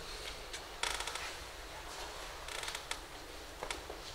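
A creak made of rapid close-set clicks about a second in, a shorter creak a little later, and a few single sharp clicks near the end, over a low steady hum.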